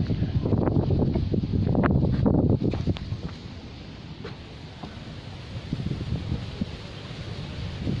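Strong wind gusting over the microphone, with leaves rustling: the gust front of an approaching desert dust storm. The gusts are loudest for the first few seconds, then ease to a lower, steadier rush.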